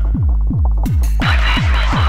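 Tribal freetekno electronic music: a fast, deep kick drum, about three beats a second, each hit falling in pitch. The hi-hats and upper layers drop out for about the first second, leaving the kick almost alone, then the full track comes back in.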